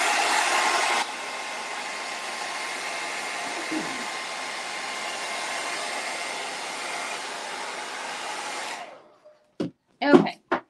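Handheld hair dryer blowing on wet paint to dry it. It is loudest for about the first second, then drops to a lower steady level, and switches off shortly before the end, followed by a few light clicks.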